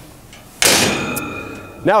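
A hinged steel engine-compartment access door on a Komatsu WA600-8 wheel loader slams shut about half a second in. It gives a sharp bang followed by a metallic ring that fades over about a second.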